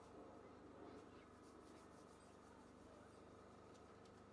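Near silence: faint steady background noise, with a few faint ticks.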